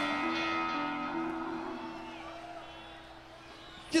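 Live rock band music: a held chord rings on after the sung line and fades away gradually over a few seconds.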